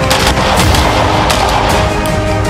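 Several gunshots from an AR-style carbine fired in quick succession, each a sudden crack, over background music.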